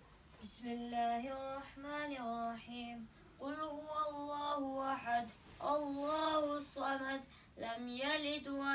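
A boy's voice reciting a short surah of the Quran in a melodic tajweed chant, holding long notes. The recitation comes in phrases with short breath pauses between them, about every one and a half to two and a half seconds.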